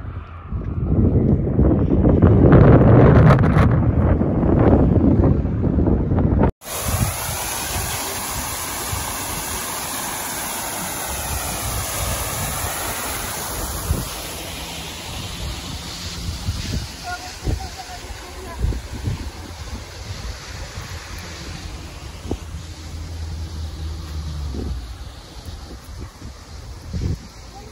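Wind buffeting a phone's microphone, a loud low rumble through the first six seconds. It cuts off suddenly, giving way to a quieter, steady outdoor background with a few light taps.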